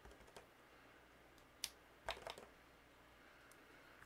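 Faint taps and clicks of a clear acrylic stamp block being inked on a dye ink pad and pressed onto cardstock: a sharp tap about one and a half seconds in, then a quick run of light taps just after.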